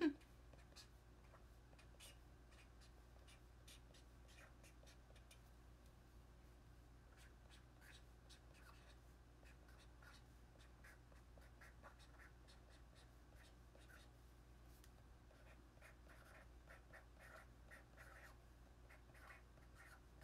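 Faint scratching of a pen writing on a paper tanzaku strip, in short scattered strokes that come more thickly near the end.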